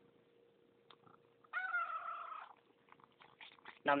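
A domestic cat mewling once, a single drawn-out call of about a second with a slight waver in pitch, followed by a run of faint quick clicks from its licking.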